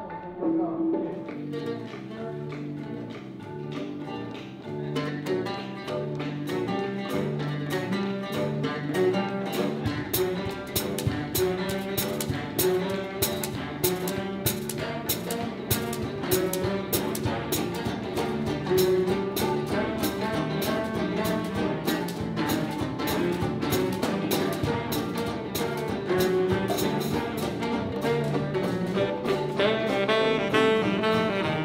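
Band music with horns and bass, in a jazzy style. A steady beat takes hold about ten seconds in.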